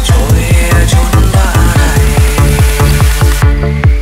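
Vietnamese Vinahouse remix dance music with a heavy, fast kick drum at about four beats a second. Near the end the high end drops away and a rising tone builds.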